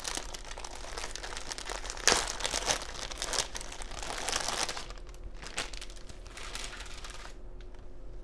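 Thin clear plastic wrapping crinkling and rustling as it is pulled off a folded felt mat. It is loudest about two seconds in and dies away near the end.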